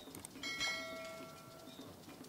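A metal cooking pot rings once after being knocked by the ladle, a clear bell-like tone that dies away over about a second and a half.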